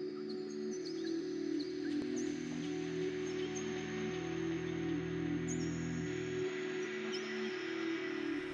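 Calm ambient background music of sustained, slowly changing chords, with short high bird-like chirps scattered over it.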